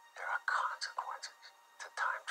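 Speech only: a man talking in short phrases, thin-sounding with the low end missing.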